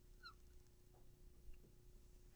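Near silence with a faint room hum. About a quarter second in comes one short squeak of a dry-erase marker on the whiteboard.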